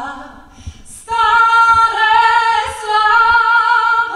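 A solo female voice singing unaccompanied, with vibrato on long held high notes. The phrase fades about half a second in, a short breath follows, and the next phrase comes in louder about a second in.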